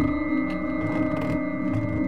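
Background music: steady ringing tones held over a low drone.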